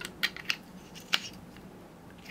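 The metal tail cap of an Olight M3X Triton flashlight being screwed onto its body: a few short, faint metallic clicks and scrapes from the threads, the sharpest about a second in.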